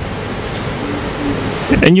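Steady, fairly loud hiss with no distinct tones, cut off near the end as a man starts speaking into a microphone.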